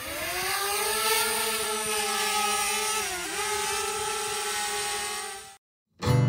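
Small DJI quadcopter drone with propeller guards, its motors and propellers spinning up from the ground: a buzzing whine that rises in pitch at the start, then holds steady with a brief dip in pitch about three seconds in, and cuts off suddenly near the end.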